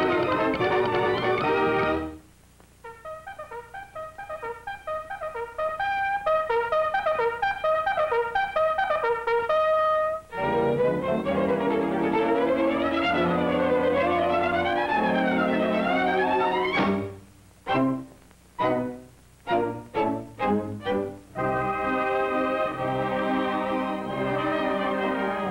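Brassy swing-band cartoon score. The full band breaks off after about two seconds into quieter short staccato notes, then swooping, wavering lines and a rising glide that cuts off sharply. A run of stop-start hits follows, and the full band comes back in near the end.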